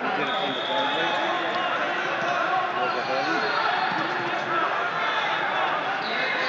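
Many voices of coaches and spectators talking and shouting over one another around the wrestling mats, steady throughout, with a thin high tone drifting through at times.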